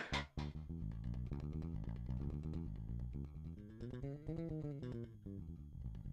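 Electric bass played hard with the amplifier turned off, so only the bare strings are heard, faint: a quick run of plucked notes that climbs and falls back in pitch, with the buzzing of strings against the frets that comes from plucking hard.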